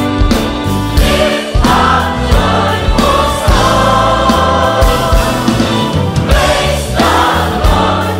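Large mixed choir singing an upbeat gospel song with full band backing: electric bass and a steady beat.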